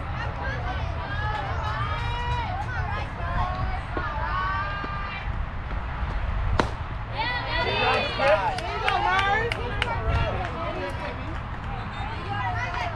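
Young softball players shouting and chanting cheers in high voices, loudest a little past the middle. There is a single sharp crack about six and a half seconds in, over a steady low rumble.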